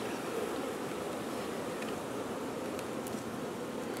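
Honeybee swarm buzzing, a steady, even hum from the many bees on and around the hive.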